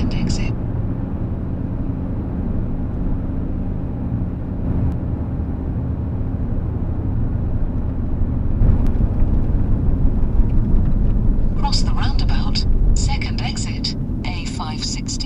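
Car engine and road noise heard inside the cabin while driving: a steady low rumble that grows louder about nine seconds in. Near the end, short choppy higher sounds break in over it.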